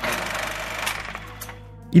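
Film soundtrack: music mixed with a noisy mechanical rumble that pulses rapidly, gradually fading toward the end.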